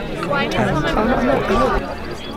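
Several people chattering close to the microphone, voices overlapping without clear words.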